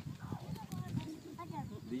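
Quiet background voices, several people talking at once, with a few faint clicks.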